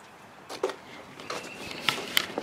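Handling noise from the camera being moved about against clothing: faint rustling with a few small knocks, the sharpest near the end.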